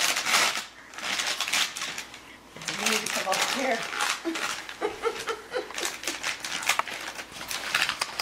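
Gift bag and wrapping paper rustling and crinkling in short bursts as a toddler's hands rummage in it, with voices in the middle.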